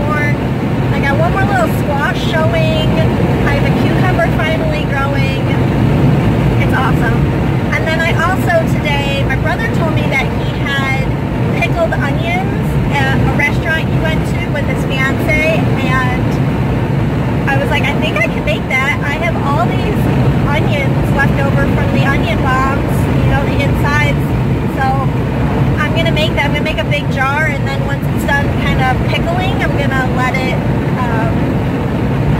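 A woman's voice, singing, over the steady road and engine noise of a car cabin on the move.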